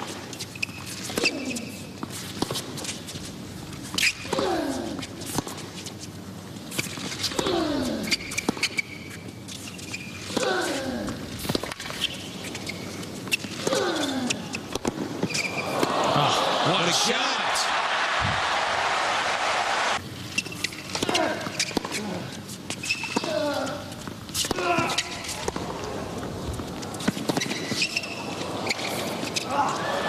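Tennis rally on a hard court: racket strokes hitting the ball about every second and a half, each with a player's grunt. Crowd applause swells between points, from about 16 to 20 seconds in, then another rally of strokes and grunts follows.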